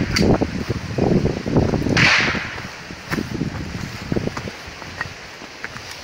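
Footsteps and handling noise on loose gravel, with two short gusts of hiss on the microphone in the first two seconds, then quieter.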